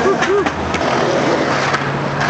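Skateboard wheels rolling on concrete. Short pitched voice calls come in the first half-second, along with a few sharp clacks.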